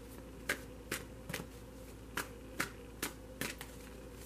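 A deck of cards being shuffled by hand, overhand: short, sharp slaps of the cards about twice a second.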